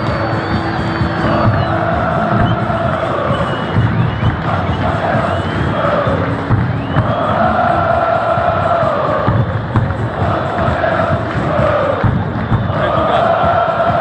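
Japanese taiko drums beating in a steady rhythm, with a large stadium crowd chanting over them in long repeated phrases.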